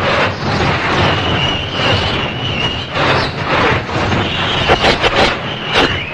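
Geronimon's roar from Ultraman, a kaiju sound effect: one long, harsh, noisy roar with a steady high screeching tone running through it, breaking into a few sharp bursts near the end.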